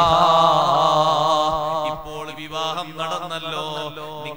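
A man's voice chanting in a melodic, intoned style: one long held note for about the first second and a half, then shorter sung phrases.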